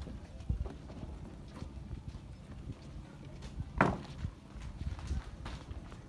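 Footsteps on the wooden planks of a boardwalk jetty: irregular low thuds as someone walks, with one louder thud a little under four seconds in.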